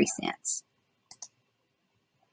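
Two quick computer mouse clicks about a second in, close together.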